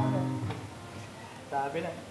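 An acoustic guitar chord struck once, ringing and fading over about half a second, with a man's voice talking around it.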